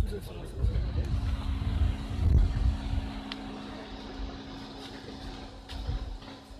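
Low rumble in the first three seconds, then a steady engine hum that continues to the end, with background voices.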